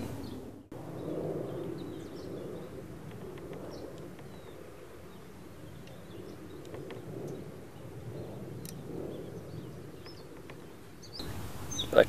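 Outdoor ambience: a steady low background rumble with a few faint, scattered bird chirps.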